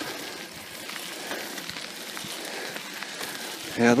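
Bicycle riding along a gravel road: a steady rush of wind on the microphone and tyre noise, with a few faint scattered ticks.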